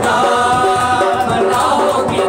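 Several men singing a devotional song together to a harmonium, with a hand-played barrel drum keeping a steady beat.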